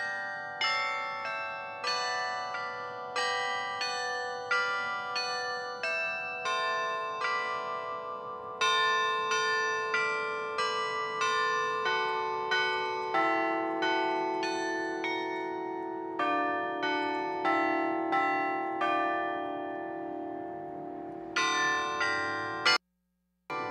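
Carillon bells playing a slow melody: a steady run of struck notes, each left to ring on into the next.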